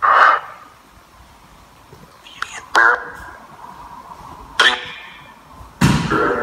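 Short, broken voice-like fragments from a ghost-box (spirit box) app playing through a phone, about four brief bursts separated by low hiss. The investigators take them for spirit words, captioned as "burn" and "bad or bed".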